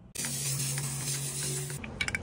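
Aerosol can of Plasti Dip rubber coating spraying in one continuous hiss of about a second and a half, cutting off suddenly near the end.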